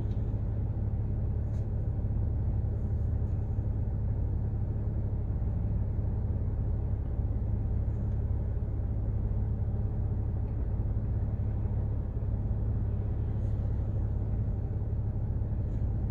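Mercedes ML engine idling steadily, a low even rumble heard from inside the cabin, with a few faint ticks.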